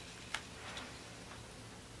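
A hand handling a tarot card on the table: one light click about a third of a second in, then a couple of fainter ticks over quiet room tone.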